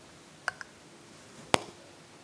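A few sharp clicks over quiet room hum: a quick pair about half a second in, then a single louder click about a second later.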